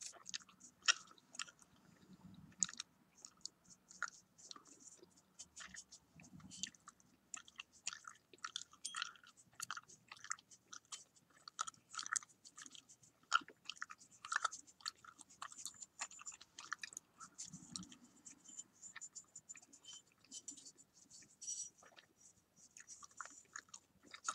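Gum being chewed close to the microphone: a steady stream of quick, irregular clicks and smacks, with a few soft low thumps.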